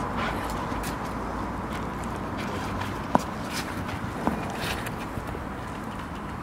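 Pool chlorine tablets and brake fluid reacting in a plastic cup, giving off a steady hiss as the mixture fumes just before self-ignition. Two sharp clicks or pops come about three and four seconds in.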